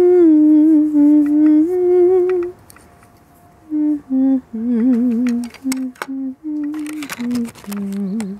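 A woman humming a slow, wordless tune in held notes that step down and waver, breaking off for about a second midway. A few small clicks from eyeglass frames being handled are heard.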